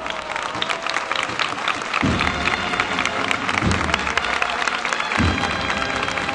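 A crowd applauding a Holy Week procession float, the clapping dense and steady, with music underneath and low thuds about every second and a half.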